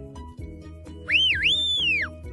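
A sheepdog handler's whistle command, starting about halfway through: a loud, high note that rises, dips sharply, climbs again, holds and then falls away.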